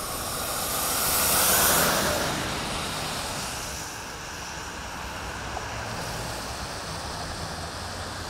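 A car passing on a wet, slushy road: tyre hiss swells to a peak about a second and a half in, then fades into a steady hum of street traffic.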